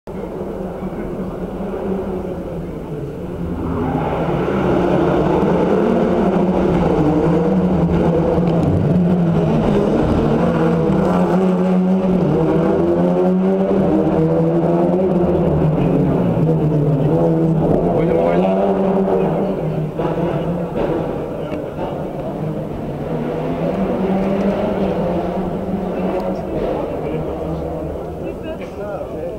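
Rally car engine running at a steady pitch for about fifteen seconds, then fading, with speech over it.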